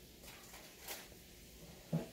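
Quiet room with a faint, brief rustle about a second in as glossy trading cards are slid across each other in the hand.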